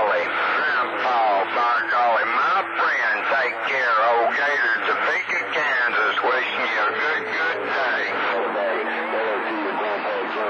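Voices heard over a CB radio receiving channel 28 skip: distant stations talking through the set's speaker, thin and hard to make out. Two low steady tones join the signal near the end.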